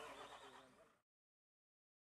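Near silence: a very faint background fades out within the first second, then complete silence.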